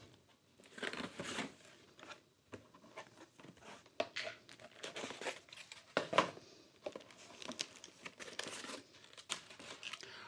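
Cardboard packaging and a plastic bag being handled while a box is unpacked. Irregular crinkling and rustling with a few sharper clicks and scrapes of cardboard.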